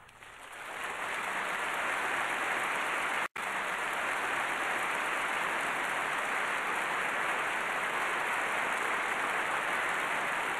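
Concert audience applauding, swelling in over the first second and then holding steady, with a momentary cut-out a few seconds in.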